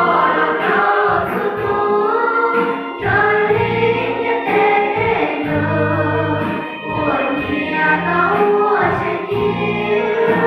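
Mixed youth choir singing a hymn of praise together, with sustained low notes under the voices.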